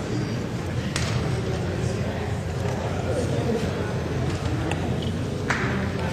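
Murmur of many people talking indistinctly in a large chamber while a roll-call vote is open. There is a sharp click about a second in and another near the end.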